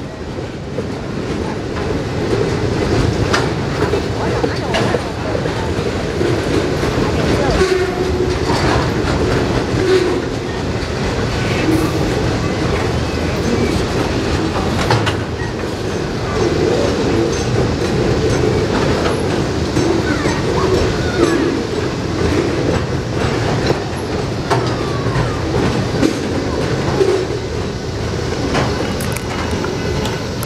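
Freight train of loaded flatcars rolling past close by: a steady rumble of steel wheels on rail with irregular clicks as the wheels cross rail joints.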